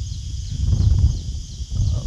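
Low, uneven rumble on the microphone with a steady, high-pitched insect drone behind it.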